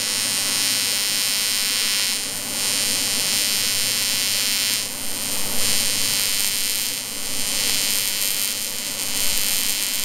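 Lincoln Square Wave TIG 200 running an AC TIG arc on aluminum, buzzing steadily as the torch makes a fusion pass over the weld bead on the boat hull. The buzz dips in level briefly a few times.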